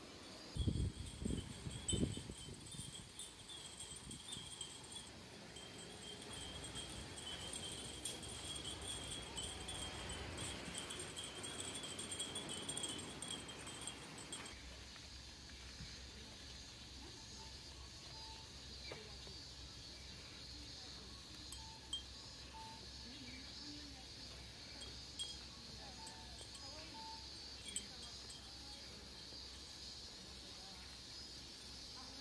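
Glass wind chimes (fūrin) tinkling faintly now and then, with a few light clinks, from about halfway on. Before that comes a steady high-pitched whine over a soft hiss, with a few thumps near the start.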